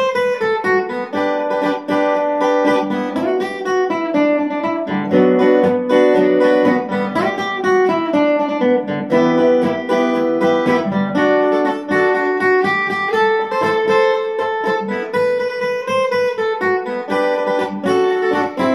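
Acoustic guitar played in G major, strummed and picked through the lead melody of a slow Hindi gospel song, with a man's voice singing along.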